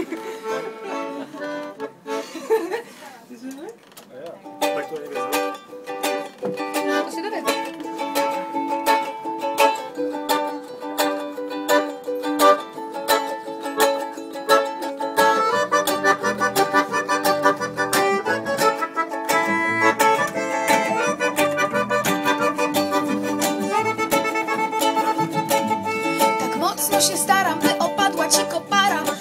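Ukulele strummed in a steady, even rhythm of chords, starting a few seconds in as the instrumental intro of a live song. About halfway through, deeper bass notes join underneath.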